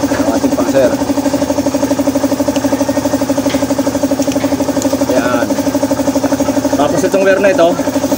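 Motorcycle engine idling steadily with an even, fast pulse. Brief voices are heard over it.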